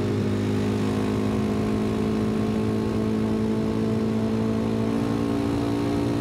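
2024 Kawasaki KLX 300's single-cylinder four-stroke engine running at a steady cruising speed, its note holding one pitch.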